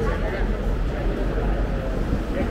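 Indistinct chatter of several people talking at once in a busy shop, over a steady low rumble.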